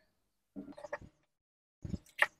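Short rustling and clicking from a ring light's power adapter and cable being handled and unwound on a table, in two brief bursts: one about half a second in, one near the end.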